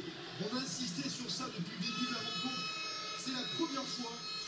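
Television sound of a football match broadcast: a faint voice over the match audio, with a steady high tone that comes in about halfway through and holds to the end.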